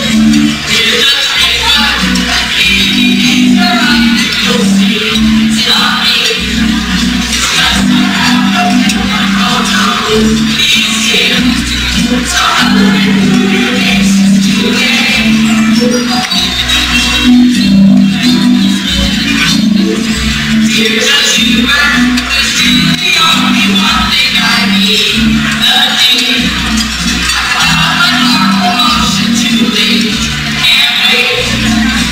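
A costumed choir singing a carol-style song together, accompanied by guitar, with light jingling percussion.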